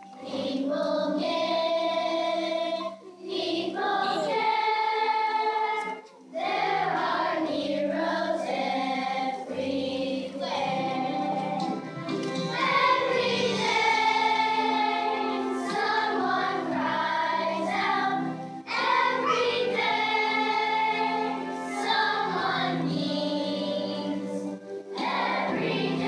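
Children's choir singing a song together, with brief breaks between phrases.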